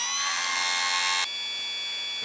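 Homemade automatic bandsaw-blade sharpener running, its electric grinder motor and wheel giving a steady high whine over the blade teeth. A little over a second in the sound drops suddenly to a quieter, thinner steady whine.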